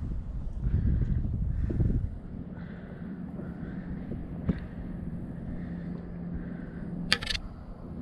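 Wind rumbling on the microphone for about two seconds, then a faint steady hum with a single sharp click near the middle and a brief hiss near the end.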